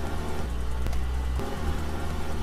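A steady low rumble with background music.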